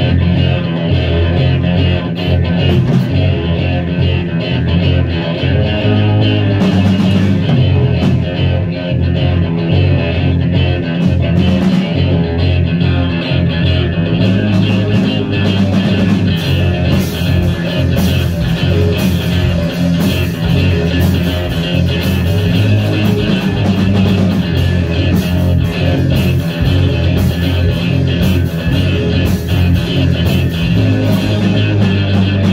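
A rock trio playing live and loud: bass guitar, distorted electric guitar through a Marshall amp, and a drum kit, with a heavy, sustained low end. The cymbals come in sparsely at first and play steadily from about halfway through.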